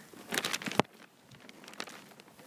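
Handling noise from a handheld phone rubbing against a winter scarf and jacket: a brief burst of rustling and crackling that ends in a sharp knock just under a second in, then one faint click near the end.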